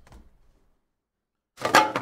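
A short plastic scrape, about half a second long, near the end: a clear plastic card case sliding off a stack of trading cards.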